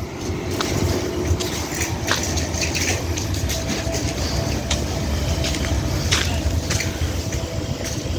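Police car engine idling with a steady low hum, with a few light clicks and handling noise over it.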